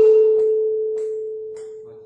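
Tuning fork ringing with a single steady tone, loud just after being struck and then fading slowly. A second fork tuned to the same frequency picks up the vibration in sympathetic resonance.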